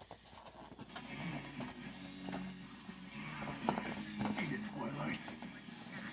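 Faint background music with voices playing at low level, with a few light clicks.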